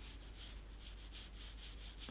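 Faint, scratchy brushing of a Pentel Aqua water brush rubbing quickly back and forth on watercolour paper, in a steady run of short strokes.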